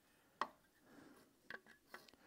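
A few small, sharp metal clicks from a piston, its connecting rod and a piston ring being handled at the cylinder bore of a bare engine block, against near silence. The sharpest click comes about half a second in, and a few lighter ones come near the end.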